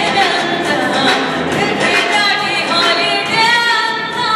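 A woman singing into a microphone over backing music, amplified through the hall's PA.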